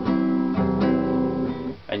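Nylon-string classical guitar strummed on a C major chord: a few strokes in a down-and-up pattern, the chord ringing between them, stopping just before the end.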